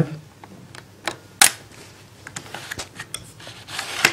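A scatter of short sharp clicks and taps over quiet room noise, the two loudest a third of a second apart about a second in, with lighter ticks later: handling noise as the handheld camera is moved around the laptop.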